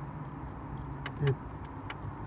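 A vehicle engine idling steadily, a constant low hum.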